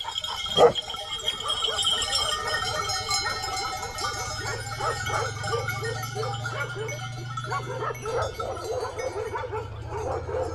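A herd of goats bleating, many short calls overlapping as the animals move along, with bells ringing among them.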